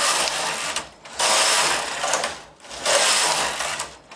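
Studio 860 mid-gauge knitting machine's carriage pushed back and forth across the needle bed, knitting rows: a rattling whir for each pass of about a second and a half, three passes with short pauses between as the carriage changes direction.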